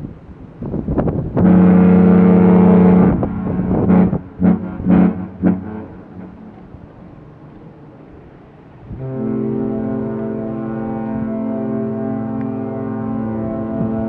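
Two cruise ships' horns exchanging signals: a loud blast of about a second and a half, then a run of short blasts, then after a lull a second, lower-pitched horn sounds one long steady blast from about nine seconds in.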